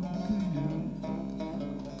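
Bağlama, the Turkish long-necked lute, played with a plectrum: a run of plucked notes filling the gap between sung lines of a Turkish folk song (türkü).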